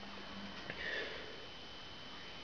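A brief, faint sniff about a second in, over a steady low hiss.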